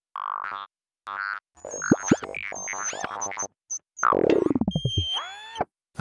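Synthesized cartoon sound effects: short electronic bleeps with silent gaps between them, then a quick run of chirps and high beeps, a long falling swoop about four seconds in, and a rising boing-like tone near the end.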